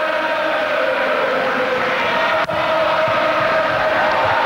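Football stadium crowd singing a chant together on a long held note.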